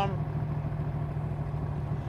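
Stroker 427 cubic-inch V8 of a Backdraft Racing Cobra roadster running steadily in gear at a light cruise, a low, even exhaust note through stainless side pipes, heard from the open cockpit.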